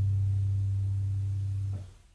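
Cello holding a low final note steadily, which cuts off near the end and fades away.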